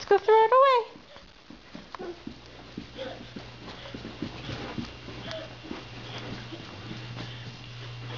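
A high, sing-song voice for about the first second, then faint scattered knocks and rustles with a low steady hum.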